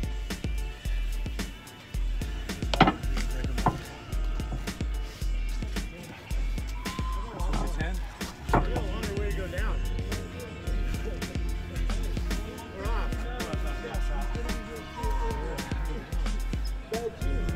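Background music with a steady, evenly repeating bass beat, with a voice over it in the second half and a few sharp clicks.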